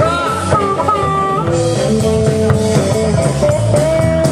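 Live blues band playing, a guitar carrying the tune with long held, slightly bending notes over a steady bass.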